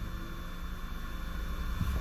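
Steady low hum inside a car's cabin, a constant rumble with a light even hiss above it.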